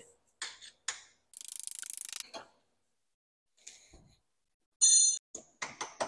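Ratchet wrench clicking in a fast run for about a second as an engine mount bolt is worked loose, with scattered taps of tools on metal around it. A sharp, ringing metal clink comes about five seconds in.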